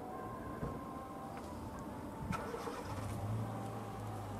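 Car-park traffic: a car engine running, with a low steady engine hum that comes in about three seconds in.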